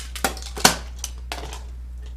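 Several sharp clicks and taps of small hard makeup items being handled and set down, the loudest a little over half a second in, over a low steady hum.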